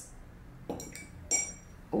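Two light clinks about half a second apart, each with a brief ringing: a paintbrush tapping against a container.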